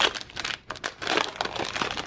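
Foil wrapper of a trading-card pack being torn open and crinkled in the hands: a quick, irregular run of crackles.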